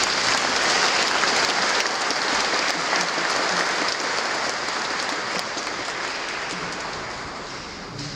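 Congregation and choir applauding, a dense crowd clapping that slowly dies down toward the end.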